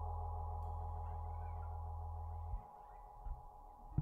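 Held keyboard-synthesizer chord ringing out quietly at the end of a song, its low bass note cutting off about two and a half seconds in while the higher pulsing tones go on; a faint knock follows.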